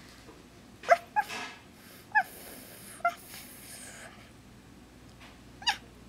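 Five short, high yips like a small dog's, spread unevenly over a few seconds, the first the loudest, with some breathy hissing after the second and fourth.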